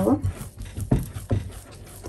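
A hand kneading soft kefir dough in a glass bowl, with two dull thumps about a second in as the dough is pressed and pushed against the bowl.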